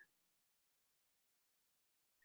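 Near silence: the sound drops out completely.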